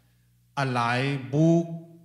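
A man speaking into a microphone: a short burst of speech after about half a second's pause, ending on a drawn-out vowel, with a faint steady hum in the pauses.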